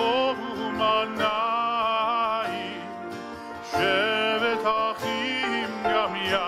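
Music: a man singing a slow melody with vibrato, in phrases, to a strummed acoustic guitar.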